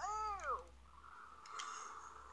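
A short, high-pitched vocal whine that rises and then falls, lasting about half a second, at the very start.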